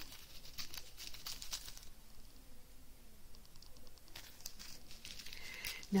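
Small clear plastic bags of diamond-painting drills crinkling as they are handled and turned, with light crackles, quieter for a couple of seconds in the middle.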